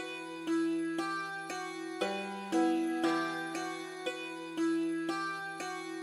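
A sampled synth melody from Kontakt's Ashlight instrument (Needle Sticks preset), a plucked tone like an ethnic stringed instrument, playing a simple four-note pattern on repeat in E minor over a held low note, about two notes a second.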